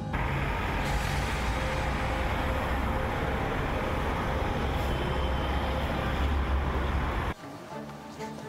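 Road traffic: cars driving along a busy street, a steady, dense rush with a strong low rumble that cuts off suddenly about seven seconds in, where music takes over.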